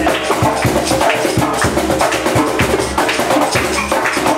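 Live percussion music: a djembe struck with bare hands in a fast, even rhythm, with other percussion and instruments playing along.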